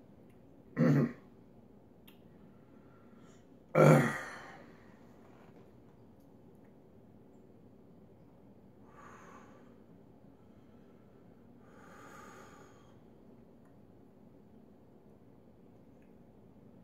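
A man's throat and breath noises while eating a superhot 7 pot scorpion pepper: a short grunt about a second in, a louder guttural throat noise around four seconds in, then soft breaths.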